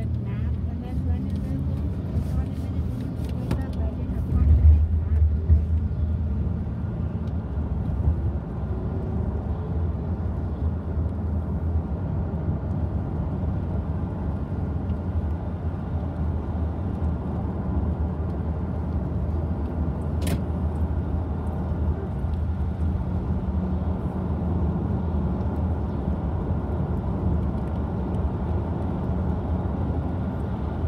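Steady engine and road rumble heard from inside a moving bus, low and even throughout. It swells briefly a few seconds in, and there is a single sharp click around the middle.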